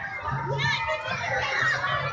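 Crowd of amusement-ride riders and onlookers shrieking and shouting, many voices overlapping, over a low hum.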